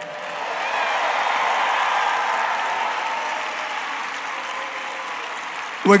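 Large crowd applauding, swelling over the first couple of seconds and then slowly dying away.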